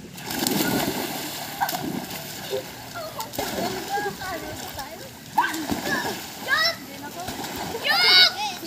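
Several children jumping into a swimming pool together: a burst of splashing about half a second in, then choppy water sloshing as they swim about. High voices call out a few times in the second half.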